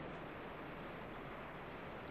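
Faint, steady rushing noise of a volcanic eruption, even and without distinct bangs or crackles.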